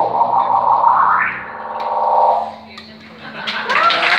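Electric guitar holding the final note through effects and distortion, swelling and wavering with a rising slide, then dying away a little past halfway. Near the end a voice calls out as the first claps come in.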